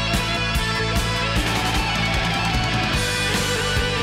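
Instrumental passage of a hard rock song: electric guitar over bass and a steady drum beat, with no vocals.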